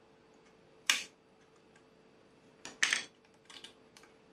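A few light clicks and taps from handling a glue tube against a balsa model frame on a cutting mat: one sharp click about a second in, a louder cluster near three seconds, then a couple of fainter ones, over a faint steady hum.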